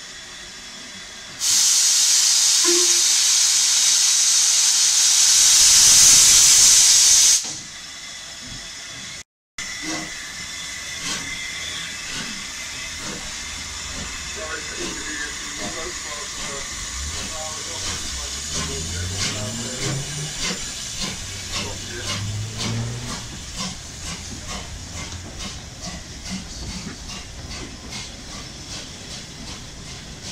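Steam locomotive 45596 Bahamas, an LMS Jubilee class 4-6-0, letting off a loud, steady hiss of steam for about six seconds that starts and stops abruptly. After a short break the steam hiss continues more quietly, with a growing run of regular clicks as a train moves off.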